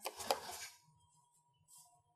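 A brief clatter of small hard objects knocking together, a few quick knocks with the loudest about a third of a second in, followed by a faint steady high hum.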